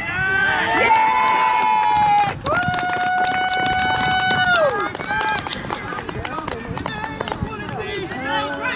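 Excited shouting and cheering as a goal is scored in a football match, with two long held shouts, the second lasting about two seconds and falling off at its end, then quieter scattered voices.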